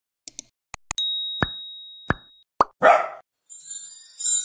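Sound effects of an animated intro card: a few quick clicks, a bell-like ding whose high tone rings and fades over about a second and a half, three short rising pops, a brief noisy burst, and a bright shimmering whoosh starting near the end.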